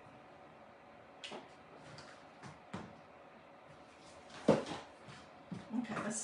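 Handling sounds of hot-glue crafting on a tabletop: scattered light taps and rustles as a hot glue gun and burlap leaves are worked onto a wreath form, with one sharper knock most of the way through, likely the glue gun or wreath set against the table.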